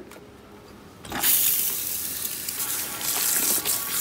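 Water from a salon shampoo-bowl hand sprayer running onto a lace wig frontal in the basin, rinsing the toner out. It starts about a second in and then runs steadily.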